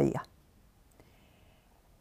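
A woman's spoken word ending, then a pause of near silence with a single faint click about a second in.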